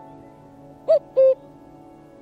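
Common cuckoo giving its two-note "cu-ckoo" call once, about a second in, the first note arching and the second lower and level. It sounds over soft background music of sustained notes.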